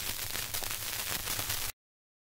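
Surface noise of a 78 rpm shellac record after the music has ended: steady hiss with fine crackles, cutting off suddenly near the end.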